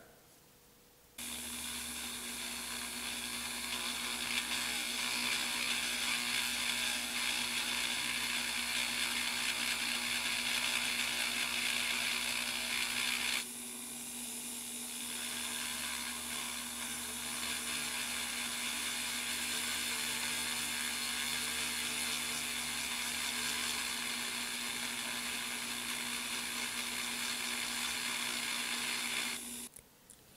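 Dremel rotary tool running steadily with a fine burr bit, grinding the molded trim off a small die-cast metal car body. The whine starts about a second in, drops in level for a moment around the middle, then carries on and stops just before the end.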